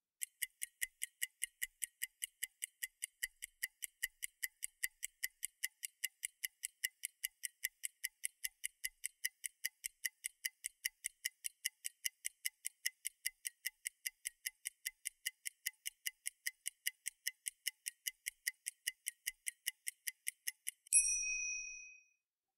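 Clock-style ticking sound effect, even and regular at about three and a half ticks a second, stopping near the end with a short bright ding: a timer marking the time given for an exercise.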